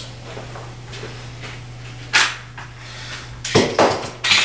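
Objects being handled at a workbench: one sharp knock about halfway through, then a quick cluster of louder knocks near the end, over a steady low hum.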